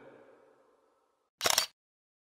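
A camera shutter sound effect: one quick double click about a second and a half in, after the tail of a song fades out.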